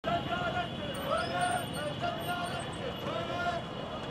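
Voices of a large marching crowd, with rising-and-falling calls that repeat about once a second, over steady street and traffic noise.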